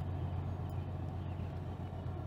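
Steady low drone of a Great Lakes freighter's engines as the ship gets under way out of the lock.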